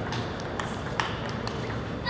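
A table tennis rally: a celluloid ball clicking sharply off rubber paddles and the tabletop, about five clicks in two seconds.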